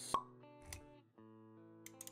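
Intro music of held, sustained notes, with a sharp pop just after the start and a softer pop a little later, sound effects timed to an animated graphic.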